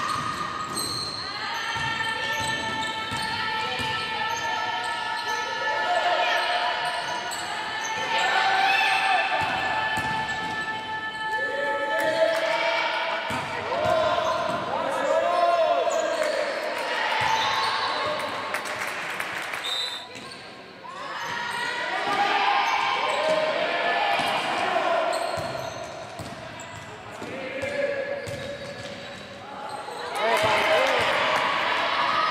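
Women's basketball game in a sports hall: a ball bouncing on the court while players shout and call to each other, the sound echoing in the hall.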